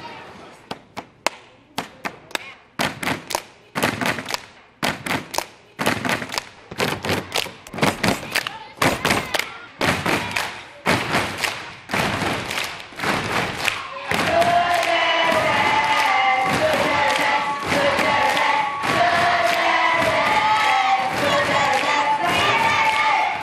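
Many feet stomping and hands clapping on a wooden floor, starting as scattered stomps and settling into a steady stomp-and-clap beat. About fourteen seconds in, a group of children's voices starts singing together over the beat, and it gets louder.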